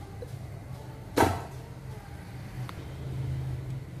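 Steady low hum of a stove heating cooking oil in an aluminium wok, with one sharp clank about a second in and a faint tick later.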